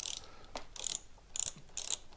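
Ratchet of a click-type torque wrench, set to reverse, clicking in short bursts on the back-swing as handlebar clamp screws are loosened. There are about four bursts, roughly half a second apart.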